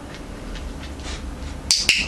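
Dog-training clicker giving two sharp clicks a fraction of a second apart, near the end, after a few faint ticks.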